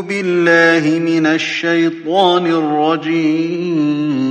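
A man reciting the Quran (tilawat) in slow, melodic chant, each note long-held and ornamented with bends in pitch, with short breaks for breath between phrases.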